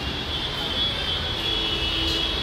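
Steady indoor shop background noise: a low hum and hiss with a thin, steady high whine, and faint voices in the background near the end.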